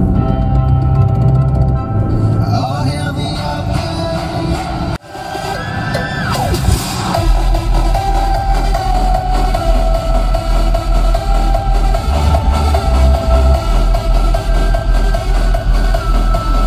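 Bass-heavy electronic music played loud through a car audio system with a 12-inch Ground Zero GZHW 30X subwoofer (800 W RMS, 4 ohm), heard inside the car. The music drops out briefly about five seconds in. It then comes back with a deep, even bass beat about twice a second.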